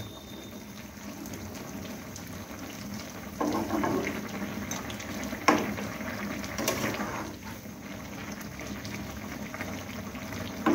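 Chicken in a thin yogurt gravy bubbling steadily as it simmers in a nonstick frying pan, with a flat spatula stirring and scraping through it. There is a sharp knock about five and a half seconds in.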